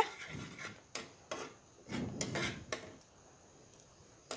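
A flat metal spatula scraping through thick, boiled-down milk in a metal kadhai: a few short rasping strokes, then a longer one about two seconds in. The strokes die away about three seconds in.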